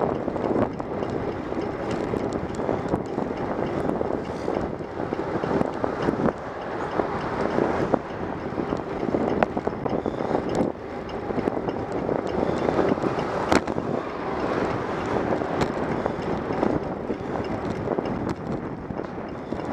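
Wind rushing over a bicycle-mounted camera's microphone while riding, mixed with tyre and road noise, with scattered sharp clicks from the mount over bumps.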